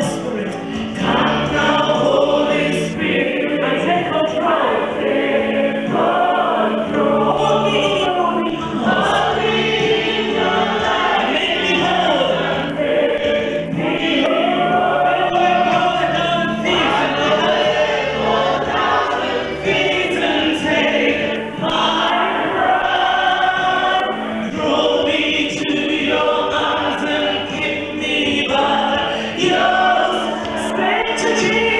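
A church congregation singing a gospel worship song together, with steady held low chords underneath.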